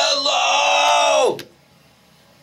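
A person's long, loud, held yell or wail on one pitch, dropping in pitch as it cuts off about a second and a half in. Faint phone-line hiss follows.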